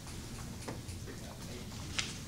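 Faint, irregular clicks of calculator keys being pressed, over a low steady room hum, with one sharper click at the very end.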